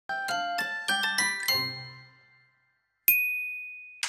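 Short logo jingle of bright, bell-like chime notes: six quick ringing strikes that die away, a pause, then a single high ding a second later that rings on and fades.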